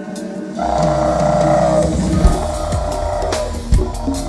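Live band music with a didgeridoo. After a brief drop in the bass, the didgeridoo drone comes in about half a second in with a high, wavering overtone over a drum groove, with a few sharp drum hits. The overtone fades out shortly before the end.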